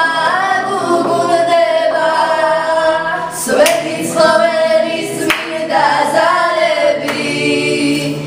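Women's voices singing a song unaccompanied, with long held notes and short breaks between phrases.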